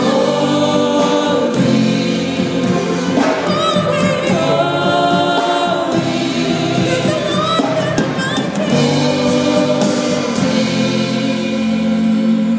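Live gospel song: a woman's lead vocal with a backing choir of voices and band accompaniment, sustained and steady.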